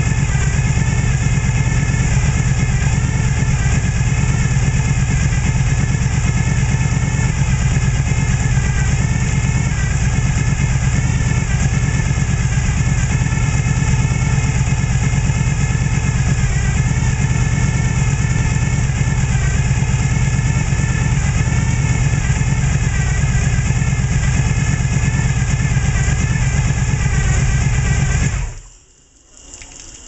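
Low-compression Chevrolet Gen V 454 big-block V8 on a run stand running steadily through open headers, loud and unmuffled. It shuts off abruptly near the end, leaving a faint hiss as steam comes off the hot engine.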